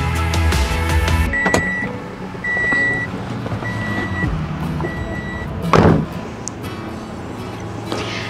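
Background music cuts off, then a car door clicks open and the car's warning chime beeps four times, about once a second. The door is then shut with a loud thud.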